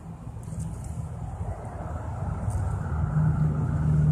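Car engine running, heard from inside the cabin as a low, steady rumble that grows louder about three seconds in.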